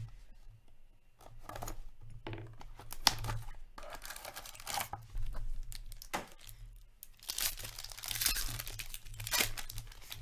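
Hands tearing open a hockey trading-card pack wrapper and crinkling it, in irregular rustling bursts. There is a sharp snap about three seconds in, and the longest, loudest stretch of tearing comes between about seven and nine and a half seconds.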